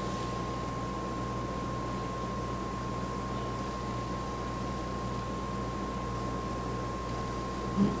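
Steady background hum and hiss with a thin, constant high tone running through it; no distinct sounds.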